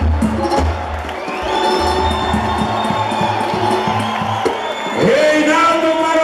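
Live pagode band playing, with a steady low percussion beat, and a crowd cheering. About five seconds in, a voice comes in over the PA on a long held note, louder than the band.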